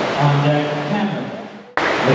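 A man's voice announcing, echoing in a large hall, fades out, and the sound cuts off suddenly near the end before speech starts again.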